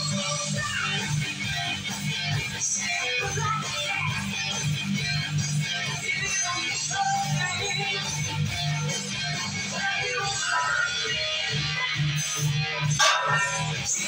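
Background music led by guitar, playing steadily.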